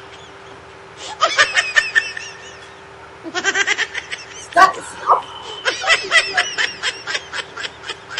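Rapid, high-pitched laughter in three bursts: about a second in, around three seconds in, and from about five and a half seconds on. It is a comic laugh effect, with a faint steady hum underneath.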